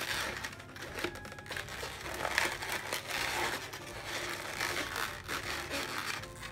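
Inflated latex modelling balloons rubbing and creaking against each other and under the fingers as bubbles are pressed and tucked into place, an irregular crinkly handling noise.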